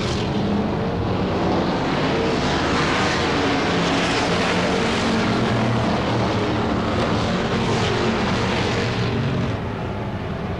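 Pack of V8-powered dirt-track Sportsman stock cars racing around the oval, their engines blending into one steady, loud drone.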